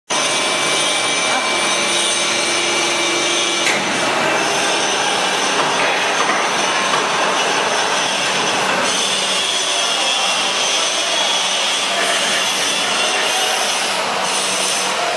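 Steady, loud machine noise: a continuous hiss and whine with several high steady tones, barely changing in level, with a single click about four seconds in.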